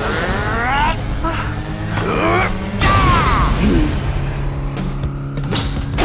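Animated fight-scene soundtrack: music with action sound effects and pitched voice-like cries that glide upward, three times.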